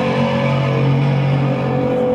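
Distorted electric guitars and bass holding one low chord, ringing steadily with no drums or vocals.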